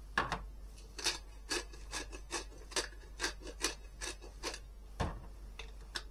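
Hand pepper mill grinding black peppercorns: a quick, even run of short grinding strokes, about four a second, stopping about a second before the end.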